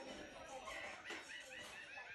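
A cartoon soundtrack playing faintly through a TV speaker: a quick run of short, high, squeaky animal-like cries, several a second, starting a little before the middle.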